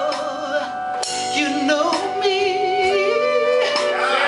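A man singing live into a microphone, holding long notes with a wide vibrato, over steady sustained instrumental accompaniment.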